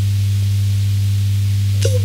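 A loud, steady low hum with a faint hiss over it, unchanging through the pause in speech.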